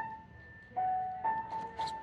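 Grand piano played slowly in single notes: a higher note struck repeatedly, a lower note about a second in, then the higher note again three times. The piano is said not to sound right, its tuning starting to go.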